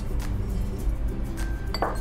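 A small kitchen dish clinks once near the end, while lemon juice goes into the dressing in the blender, over steady background music.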